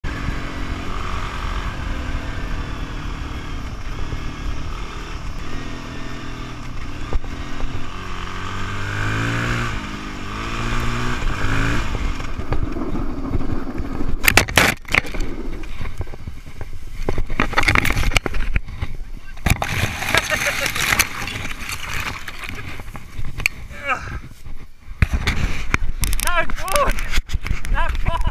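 Husqvarna dirt bike engine running and revving, its pitch stepping up and down through gear changes. About 14 seconds in come sharp knocks as the bike runs into a branch across the track and goes down, followed by noisy scraping and knocking.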